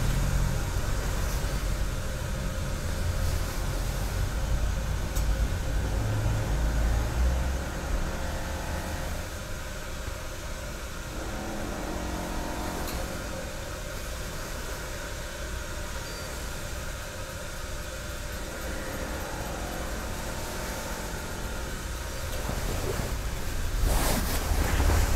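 A steady low rumble and hum, heavier for the first eight seconds, then easing. A soft click comes about thirteen seconds in as a tea utensil is set down on the tatami.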